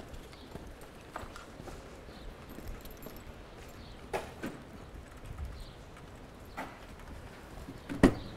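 Footsteps of people walking on a paved sidewalk: a few sharp taps at uneven spacing over a steady low street background.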